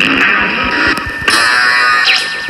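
Instrumental synthpop from iPad synthesizer apps (SKIID and Apolyvoks): a dense, bright synth texture, with a new held chord coming in about a second and a half in.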